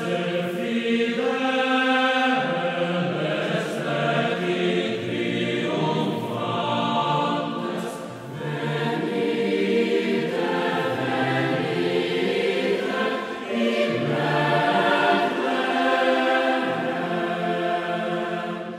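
Boys' choir singing, sustained chords that change every second or two.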